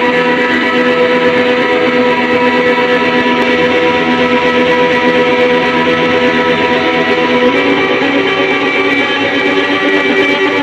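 Electric guitar played loud through an amplifier, live, holding ringing chords that sustain for seconds at a time and change only a couple of times.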